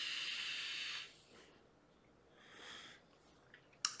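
A draw on an Aspire Cleito Pro tank fitted to an Aspire Puxos vape mod: a steady airy hiss of air pulled through the tank that stops about a second in. A fainter breath out follows at about two and a half seconds.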